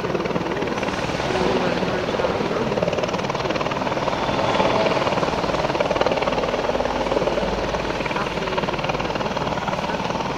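Helicopter flying low nearby with a steady rotor beat, getting a little louder around the middle.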